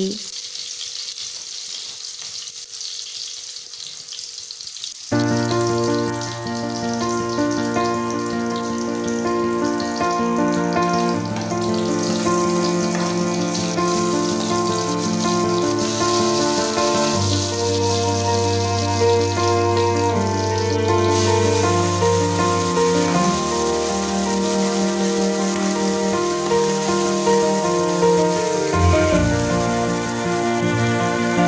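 Curry sizzling faintly in a pan for about the first five seconds, then slow instrumental background music with long held notes takes over for the rest.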